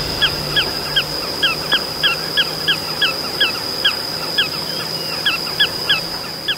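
Small pratincoles calling repeatedly: short, sharp, downward-slurred notes, about three a second, over a steady high-pitched insect drone.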